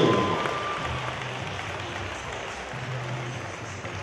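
The music's last held note dies away in the first half second, then audience applause carries on, slowly fading.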